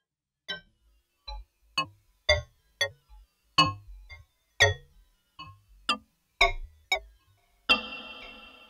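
Buchla modular synthesizer patch: a Shepard tone from a 260E pitch class generator, gated by a 281E quad function generator and ring-modulated, gives about a dozen short, irregularly spaced metallic notes. A random voltage varies the reverb amount, so some notes die quickly and others ring on.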